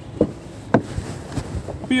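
A Ford EcoSport's front door being unlatched and opened by its outside handle: two short clicks about half a second apart.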